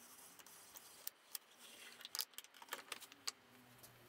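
Faint, irregular light clicks and taps, about ten spread over a few seconds, from small objects being handled at close range.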